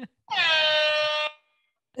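Handheld horn sounded once: a single steady, buzzy honk of about a second that starts slightly higher in pitch, settles, and cuts off abruptly. It is used as a deliberate noise to interrupt a train of thought.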